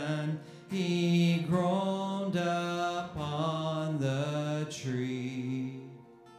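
A man singing a slow hymn verse with acoustic guitar accompaniment, in long held notes; the sung line dies away near the end.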